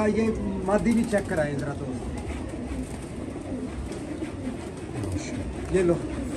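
Domestic pigeons cooing.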